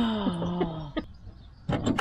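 A man's drawn-out groan of effort, falling in pitch over about a second, as he presses a bonnet gas strut onto its mount, followed by a sharp click about a second in and a short noisy burst near the end.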